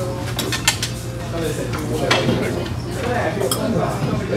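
Cutlery clinking against dishes during a meal, with a few sharp clinks scattered through, over background voices.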